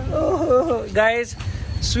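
Short bits of voice over a steady low rumble of street traffic.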